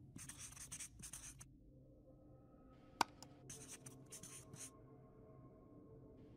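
Faint marker-on-board writing sound effect: two groups of short scratchy strokes, one near the start and one a little past halfway. A sharp mouse click, then a lighter one, falls between them.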